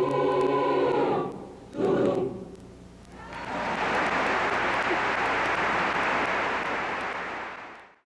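A large mixed choir holds its final chord, which breaks off about a second in, followed by one short, loud closing note. Audience applause then starts about three seconds in, keeps steady, and fades out near the end.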